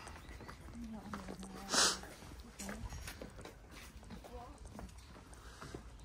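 People talking in the background outdoors, with one short, loud, hissy burst of noise just under two seconds in.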